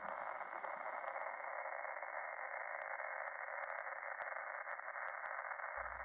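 A steady hiss of static, like an untuned radio, held in the middle range, with faint scattered ticks over it.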